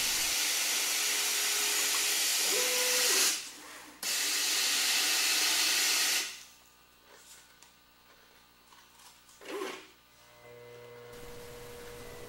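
Steady hiss as a rotary scalpel feeder pours fine powder into a plastic cup. It breaks off briefly about three seconds in, resumes, and fades out about six seconds in. A faint hum with a thin tone comes in near the end.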